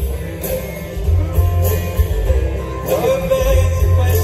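A live acoustic folk band playing through a concert PA, recorded from the audience: acoustic guitars over a heavy, booming bass, with singing.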